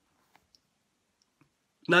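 Near silence with three faint, short clicks, then a man's speech resumes near the end.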